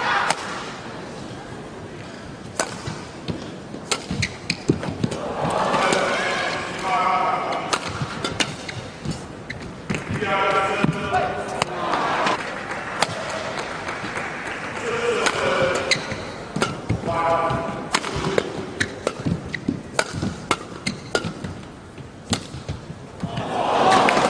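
Badminton match heard in an indoor arena: sharp clicks and knocks from racket strikes on the shuttlecock and players' footwork on the court, with a voice speaking over the hall in several stretches.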